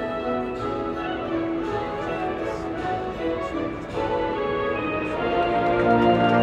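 Marching band and its amplified front ensemble playing a slow passage of held chords, swelling louder with lower notes coming in near the end.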